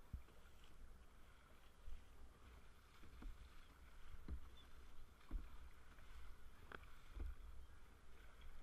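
Sea kayak being paddled, faint: small irregular splashes of the paddle blades and water slapping the hull, with a light knock every second or so.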